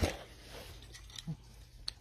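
Plastic handling of a drone's snap-in propeller guard being worked into the slot at the end of an arm: one sharper click first, then a few faint ticks and rubs.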